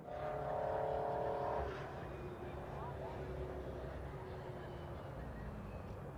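Race car engines running. One engine is held at steady revs for about the first second and a half, then drops away, leaving a low, steady engine rumble.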